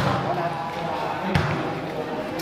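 Two sharp slaps of a volleyball being struck during a rally, one right at the start and one about a second and a half in, in a large hall.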